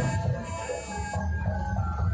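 Music played through a truck-mounted parade sound system, with a strong bass line under held synth-like tones.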